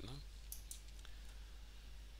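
A few quick clicks of a computer mouse about half a second in, against a faint steady low hum.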